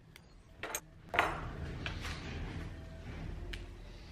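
Hand-handling sounds of bonsai wire being worked onto a small juniper's branch: a few light clicks, a sharper knock about a second in, then a steady rustle and scrape of wire and needles that fades near the end.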